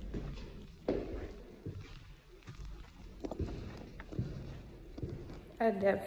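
Footsteps of boots on concrete stairs, a soft knock a little more than once a second, with a woman starting to speak near the end.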